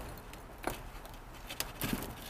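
Potting soil being backfilled by hand into a planter: a few short rustles and light taps from soil and pots being handled, over a faint background hiss.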